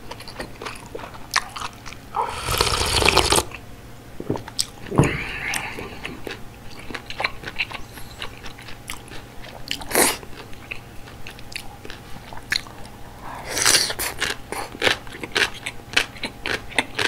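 Close-miked chewing of mala soup noodles and bean sprouts, with many small wet, crunchy mouth clicks. A few longer airy mouth sounds break in, the loudest about two seconds in and again near the end.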